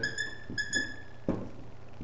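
Dry-erase marker squeaking on a whiteboard while writing numbers: two high squeaks in the first second, then a single short tap.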